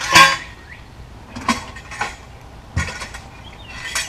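Metal handrails being handled and set down: a loud ringing metallic clang at the start, then a few lighter knocks and clinks.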